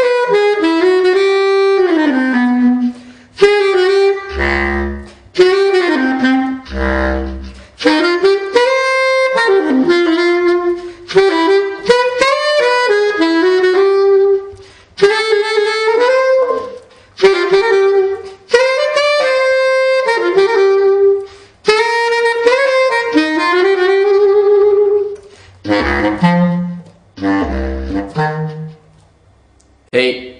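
Selmer Paris Privilege bass clarinet played solo: jazz phrases of single notes in its middle and upper register, broken by short pauses, with a few deep notes from the bottom of its range about four and seven seconds in and again near the end.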